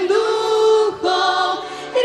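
Children's choir singing in long held notes, with a short break about halfway through.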